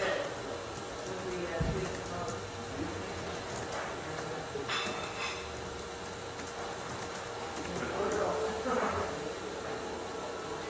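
Faint, indistinct speech from someone other than the main speaker, over a steady low room hum, with one soft thump near the start.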